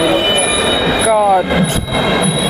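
A man's voice saying a short word about a second in, over loud, busy background noise with a steady high-pitched whine.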